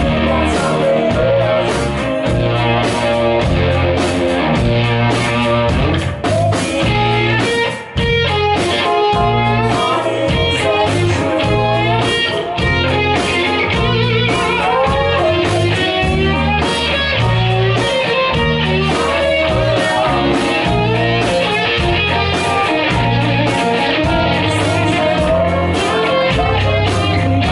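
Live rock band playing an instrumental passage: an electric guitar carries a bending melodic line over bass guitar and keyboard, with a brief drop in the playing about eight seconds in.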